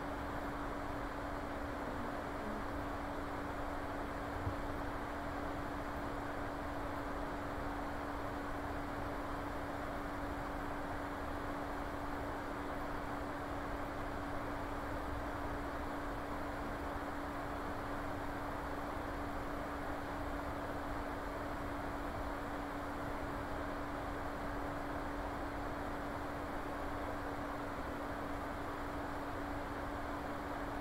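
Steady background hiss with a constant low hum throughout, and one faint click about four and a half seconds in.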